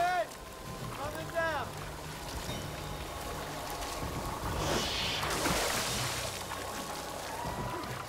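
Film soundtrack of water sloshing and splashing, with two short cries that rise and fall in pitch near the start and a louder rush of splashing about five seconds in.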